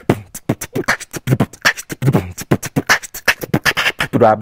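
Human beatboxing into a handheld microphone: a fast, dense run of mouth-made drum hits, deep kick-like thumps mixed with sharp hi-hat and snare clicks, about eight or nine a second.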